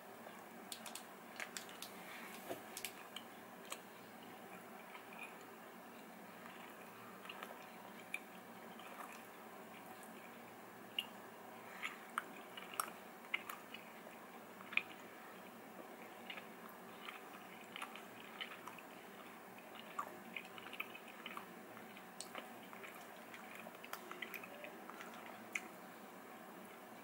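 Faint chewing of a soft protein bar, with scattered small clicks and smacks from the mouth.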